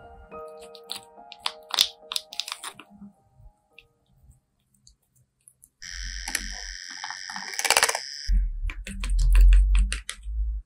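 Metal palette knife clicking and tapping against a small plastic pan of thick jelly gouache, then after a quiet pause a hissing scrape as the paint is stirred and worked in the pan, with low thumps from handling near the end.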